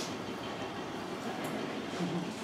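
Steady background hiss and room noise in a pause between speech, with no distinct event.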